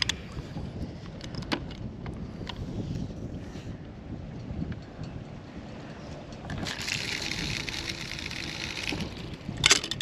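Wind rumbling on the microphone during a cast with a DAM Quick 550 spinning reel, with a few sharp clicks near the start. A steady hiss runs for about two seconds in the second half, and a quick run of clicks from the reel comes just before the end.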